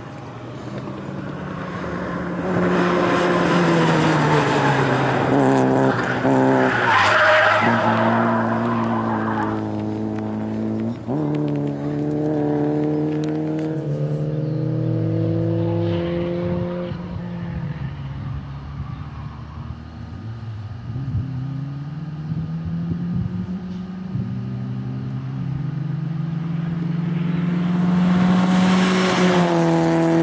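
Peugeot 106 XSi's four-cylinder petrol engine driven hard on a track course: revs climb, drop at each gear change and climb again, with a burst of tyre squeal early on. The car grows loud again as it comes close near the end.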